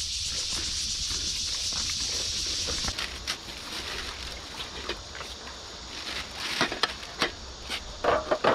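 A steady, high-pitched insect chorus in grassland that cuts off about three seconds in. It is followed by scattered clicks and knocks and light water sounds as a metal tray of snails is dipped into river shallows to rinse them.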